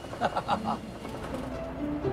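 A man laughing in a short burst of rapid chuckles, followed by steady background music notes coming in about a second and a half in.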